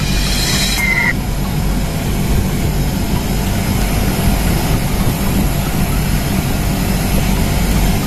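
Split air conditioner outdoor unit running: a steady, loud low hum and rumble of compressor and fan. In the first second a brief hiss and a short whistle sound over it.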